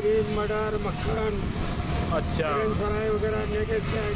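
Voices talking, too unclear for the words to be made out, over the steady rumble of road and wind noise from a moving open battery-powered rickshaw in city traffic.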